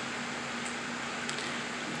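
Room tone: a steady hiss with a constant low hum underneath, like a fan or air conditioner running.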